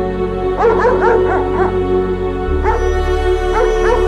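German Shepherd dog whimpering in short, high calls that rise and fall in pitch: a quick run of them about half a second in, then a few more near the end, over steady background music.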